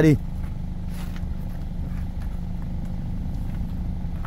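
Steady low hum of an idling engine, with a faint knock about a second in.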